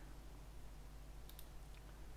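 Faint clicks of a computer mouse and keyboard as the Ctrl key is held and the mouse right-clicked. A few clicks come about halfway through and near the end, over a low steady hum.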